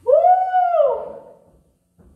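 A woman's voice through a microphone: one drawn-out wordless cry of about a second, rising in pitch, held, then falling away.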